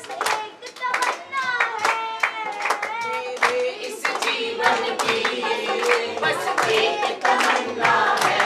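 A boy singing a devotional song (guru bhakti) while clapping his hands in a steady rhythm.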